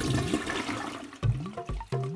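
A toilet flushing, its rush of water fading away over about the first second.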